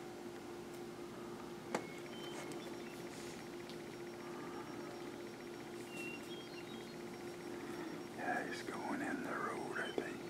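A steady low hum runs throughout, with a single sharp click about two seconds in and a few faint short high tones. Near the end comes a brief burst of whispered voice.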